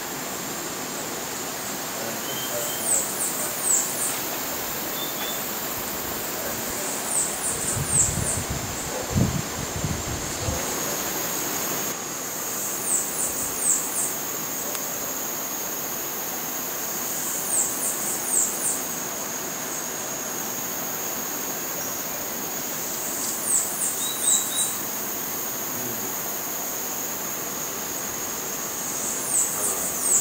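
Tropical forest ambience: a steady, very high insect-like drone, with a high, thin call of three or four quick notes repeating about every five or six seconds. A brief low rumble comes about eight to ten seconds in.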